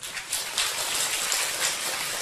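Audience applauding, many hands clapping in a steady patter that starts suddenly.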